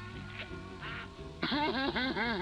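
Background music, then about one and a half seconds in a cartoon character's laugh, distorted by audio effects so that its pitch wobbles up and down in quick arcs.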